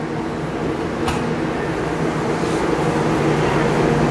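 Steady low mechanical hum made of several held tones over a hiss, with a single click about a second in.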